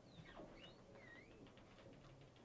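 Near silence: room tone with a few faint, short, high chirps.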